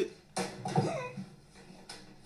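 A person coughing once, a short sudden cough about half a second in.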